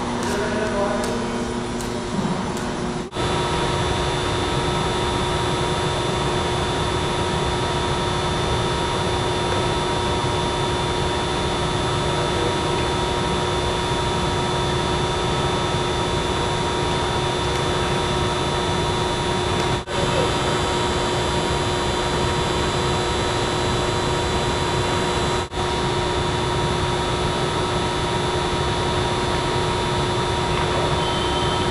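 A steady mechanical drone with a few held tones, broken by three brief sudden dropouts: about three seconds in, twice more later.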